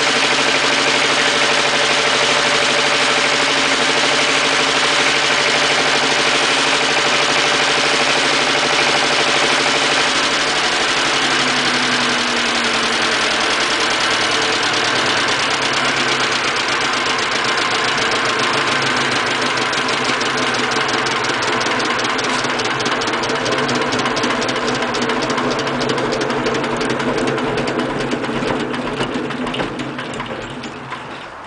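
1957 Lister FR2 two-cylinder, water-cooled diesel engine, 1.6 litre, running steadily with its generator head. Its note changes about ten seconds in, and the sound fades away near the end.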